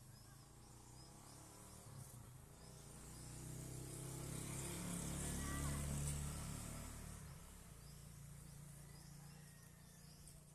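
A motor vehicle passes unseen: its engine hum builds over a few seconds, peaks about halfway through and fades away. Insects drone faintly and steadily throughout.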